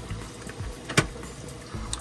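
Water running through a reef aquarium sump, with a steady low hum, and a single sharp click about halfway through.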